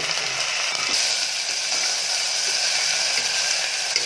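Chopped tomatoes and fried onions sizzling steadily in hot oil in an aluminium pressure cooker, stirred with a perforated steel skimmer scraping against the pot.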